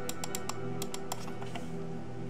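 Quiet clicks from the buttons of a Genius Traveler 6000Z wireless mouse, pressed about a dozen times at an uneven pace, over background music.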